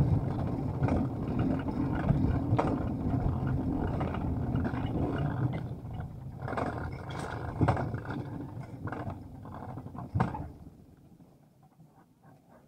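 Alpine coaster sled running fast down its steel tube track, a dense low noise broken by frequent sharp knocks and clatters. It grows quieter after about six seconds as the sled slows, and dies away near the end as it comes to a stop at the bottom station.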